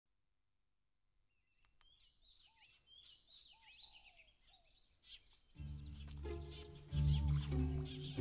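Silence, then faint birdsong: quick chirps and short whistled notes for about four seconds. About five and a half seconds in, background music with deep held notes comes in and grows louder near the end.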